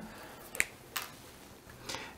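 Light, sharp clicks of a felt-tip pen being picked up and handled: two clicks about half a second apart, then a fainter tick near the end.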